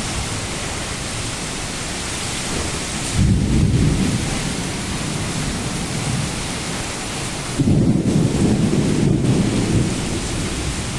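Heavy rain hissing in a thunderstorm with strong wind. Two deep rumbling surges come through it, about three seconds in and again from about seven and a half seconds for two seconds, most likely gusts buffeting the microphone.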